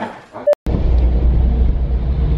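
Steady low rumble of a moving car heard from inside the cabin. It starts suddenly about half a second in, after a brief click and a moment of dropout.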